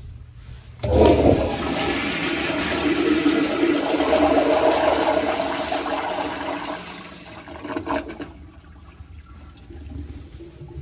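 1950s Standard Tribor toilet flushing through its flushometer valve: a sudden loud rush of water about a second in, then water swirling down the bowl for several seconds, tapering off around seven to eight seconds in.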